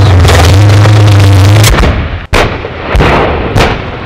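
A crowd of soldiers chanting over a loud low hum, then after about a second and a half a sudden switch to a military live-fire exercise: four heavy shots or blasts about half a second apart.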